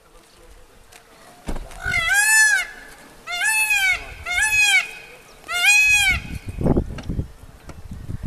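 Indian peafowl giving four loud calls, each rising then falling in pitch. The last three come at roughly one-second intervals. A low rumble follows near the end.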